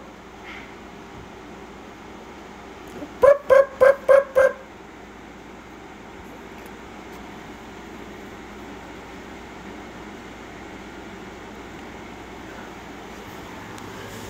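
A person's voice giving six quick, high-pitched repeated call notes in a row, lasting about a second, a few seconds in. It is a rapid sing-song string used to call cats, heard over faint steady room noise.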